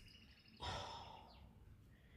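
A faint sigh, one soft breath out that starts about half a second in and fades over about a second.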